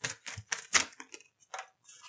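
A tarot deck being shuffled by hand: a quick, irregular run of papery card snaps and slaps, loudest a little under a second in.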